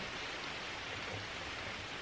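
Steady rain falling outside, an even hiss with no distinct drops or pauses.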